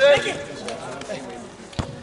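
Men's voices shouting on a football pitch, loudest just at the start. A single sharp thump of a football being kicked comes near the end.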